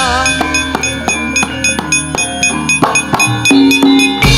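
Javanese gamelan ensemble playing: struck bronze metallophones and gong-chime notes ringing and decaying in a quick rhythm.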